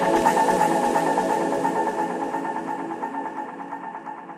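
Electronic music: a sustained, layered synthesizer texture of held tones with a fine pulsing shimmer and no drums, fading gradually.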